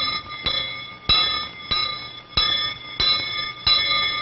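A school hand bell rung with steady swings, clanging about one and a half times a second, each strike ringing on briefly.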